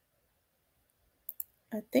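Near silence, then a quick double click of a computer mouse about one and a half seconds in.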